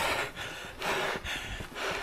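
A man breathing hard through his open mouth, a quick run of heavy gasping breaths about two a second, from the exertion of climbing a steep path under a heavy loaded pack.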